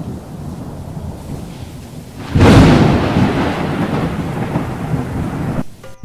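Thunder sound effect: a low rumble, then a loud thunderclap about two seconds in that rolls away over the next three seconds.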